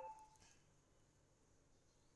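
Near silence: faint room tone. The ringing tail of a short, bell-like chime fades out right at the start.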